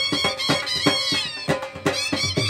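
Two dhol drums and reed pipes playing folk music together: a wavering reed melody slides downward about a second in, over the dhols' deep strokes, which thin out briefly near the end.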